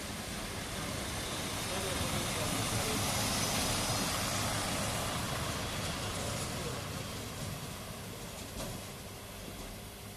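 A MÁV Bzmot diesel railcar running past, its engine and wheels on the rails swelling to a peak about three to four seconds in and then fading, over a steady low hum.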